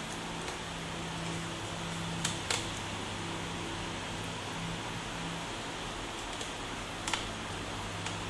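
Steady room hum and hiss, with a few faint, short clicks as a small screwdriver works the screws of a laptop's hard drive bay and the parts are handled.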